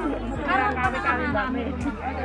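People talking over background music with a steady low beat.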